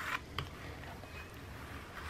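Metal ice cream scoop scraping through hard-frozen ice cream in a plastic tub: a brief scrape right at the start and a small click just under half a second in.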